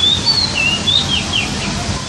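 A bird calling: a quick run of about seven short, high whistled notes, some rising and some falling, over a steady background hiss.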